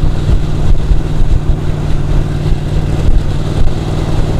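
Ducati 1299 Panigale's L-twin engine running steadily at cruising speed, heard through a helmet-mounted camera's microphone with wind rumble.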